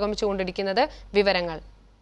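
A woman speaking in a studio, her voice stopping shortly before the end.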